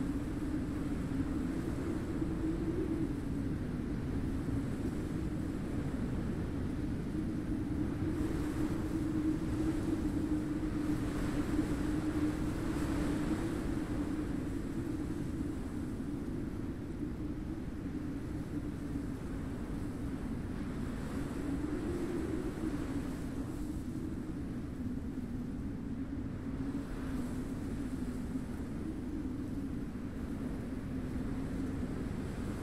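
Steady rushing wind with a low moaning howl that wavers slightly in pitch. The wind swells a little about ten seconds in.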